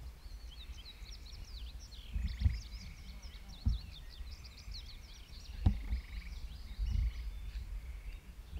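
Many small birds chirping in quick overlapping calls, with a few low thumps a couple of seconds apart that are the loudest sounds.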